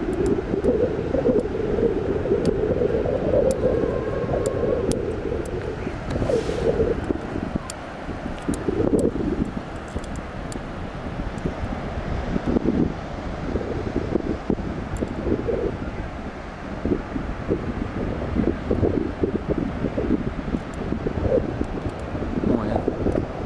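Wind buffeting the camera's microphone: a loud, uneven rumble that rises and falls in gusts.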